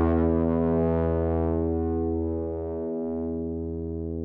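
Distorted electric guitar chord, a Heritage H-150 run through Reaktor Blocks drive and effects, left to ring out after a run of strums, slowly fading with no new notes played.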